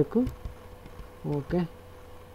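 A faint steady buzzing hum of recording background noise, broken by a short spoken word about a second and a half in.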